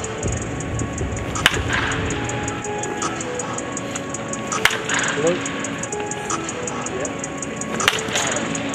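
A baseball bat hitting pitched balls, three sharp cracks about three seconds apart. Background music with a steady beat plays throughout.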